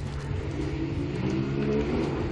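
An engine running, its pitch rising over the second half, over a steady low hum.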